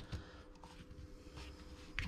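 Faint handling noise as hands fit an XT60 adapter plug into a battery discharger, with one sharp click near the end, over a faint steady hum.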